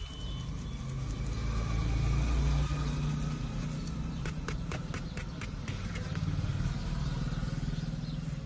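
Low, steady rumble of a car's road and engine noise heard from inside the cabin, swelling and easing a little. A quick run of light clicks comes a little past the middle.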